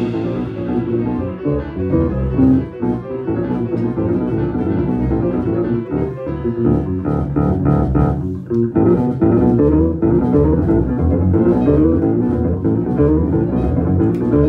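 Live free-improvised jazz carried by plucked bass instruments: electric bass and double bass playing dense, busy lines low in the range, with a few quick high repeated notes about halfway through.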